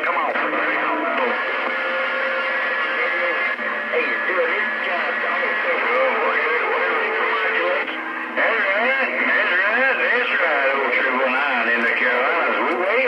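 A Stryker CB radio receiving skip on channel 28. Several far-off stations' voices come through its speaker garbled and talking over one another, with steady tones under them. The signal dips briefly about two-thirds of the way through.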